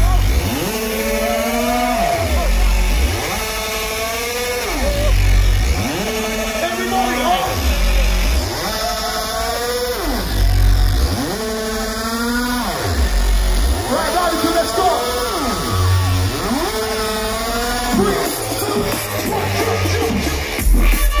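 Electronic dance music played loud over a festival PA: a distorted synth bass growl that sweeps up and down in pitch about every two seconds, alternating with heavy low bass hits.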